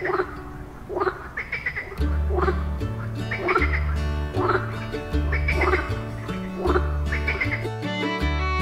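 Background music with a stepping bass line that comes in about two seconds in. Over it, short rising animal-like calls repeat roughly once a second.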